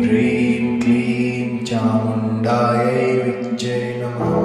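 A Kali mantra sung as a slow chant over a steady instrumental drone, with hissing consonants about once a second.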